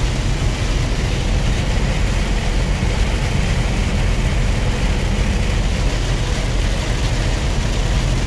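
A semi-truck cab at highway speed on a wet road: a steady low engine-and-road drone under an even hiss of rain and tyre spray.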